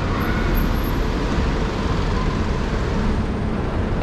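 Steady street traffic noise, with cars and vans passing close by.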